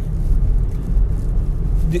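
Steady low rumble of a car's engine and road noise, heard from inside the moving car's cabin.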